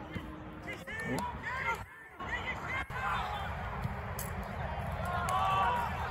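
Players and spectators calling out across an outdoor football pitch in short bursts, over a steady background haze, with a couple of sharp knocks about one and three seconds in.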